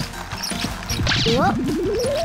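Cartoon soundtrack of light background music with playful sound effects. About a second in come a few quick chirpy pitch sweeps, then a long rising tone begins that keeps climbing.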